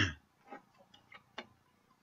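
A man clearing his throat right at the start, then quiet with three faint short clicks.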